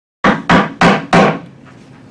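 Wooden gavel rapped four times in quick succession on a table, calling the meeting to order.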